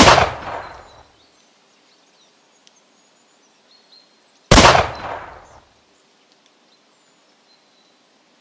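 Two rifle shots about four and a half seconds apart, each a sharp crack followed by an echo fading over about a second.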